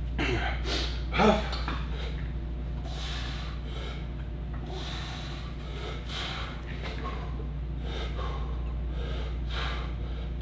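A lifter breathing hard and sharply as he braces under a loaded barbell to start a heavy squat set, with a short grunt-like sound about a second in. A steady low hum runs underneath.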